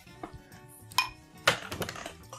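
Two sharp glass clinks about half a second apart, the first with a short ring, as beer bottles and small tasting glasses are handled on the table.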